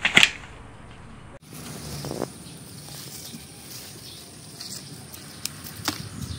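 Kidney bean vines and leaves rustling and swishing as they are pulled and handled. A loud, sharp swish comes right at the start, followed by quieter rustles, with another near the end.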